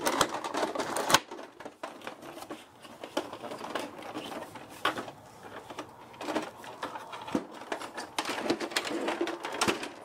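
Plastic printer housing and parts being handled and shifted by hand: irregular knocks, clicks and rattles of hard plastic, with a sharp clack about a second in.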